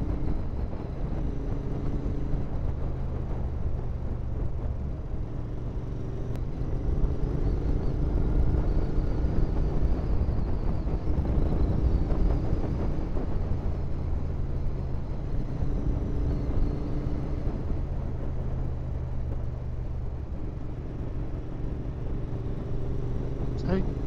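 Royal Enfield Interceptor 650's parallel-twin engine running at a cruising pace, its note rising and falling a little with the throttle, under wind noise on the microphone.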